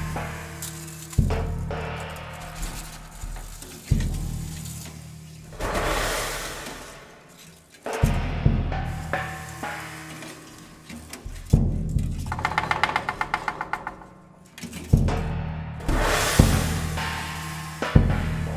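Prepared drum kit played with mallets: low tom strikes, their heads carrying metal plates and bowls, ring on with a steady low pitch, while swelling cymbal washes rise and fade between them. About twelve seconds in, a rapid rattle of about ten pulses a second lasts some two seconds.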